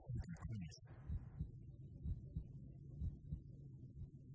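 Low, dull thuds recurring about every half-second over a quiet low hum, with a brief soft hiss about a second in.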